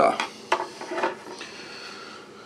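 A few light clicks and knocks as a screwdriver and a motherboard are handled on a wooden desk.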